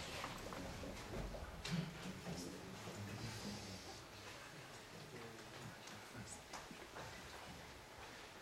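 Faint room sounds: low, indistinct murmuring with a few scattered short clicks.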